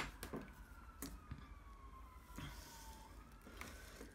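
Quiet room tone with one faint tone falling slowly in pitch over about three seconds, and a few light clicks.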